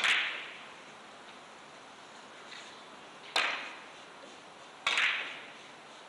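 Carom billiard balls clacking against each other three times over a few seconds, the first clack the loudest, each ringing briefly in the hall.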